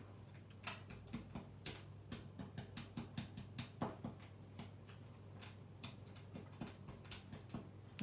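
Stiff round stencil brush dabbing and scrubbing paste onto small resin flowers on a tabletop: soft, irregular ticks and scratches, several a second, over a faint steady hum.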